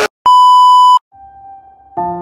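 A loud, steady one-kilohertz censor bleep, lasting about three-quarters of a second. A faint, lower steady tone follows.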